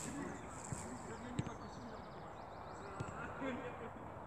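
Quiet open-air ambience with faint distant voices and a few soft, short knocks about a second in, at about a second and a half, and again at about three seconds.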